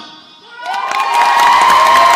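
Music stops, and after a brief hush an audience breaks into loud cheering, with high-pitched screams and clapping building over the first second.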